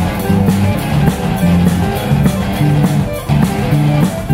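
Live rock band playing: electric guitars and bass riffing in held, shifting low notes over a drum kit keeping a steady beat.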